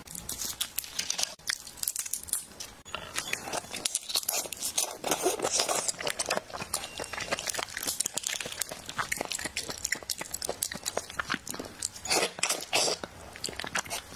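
Close crackling and snapping of a red shrimp's shell being pulled apart by hand, in clusters, with the loudest bunch near the end, along with chewing.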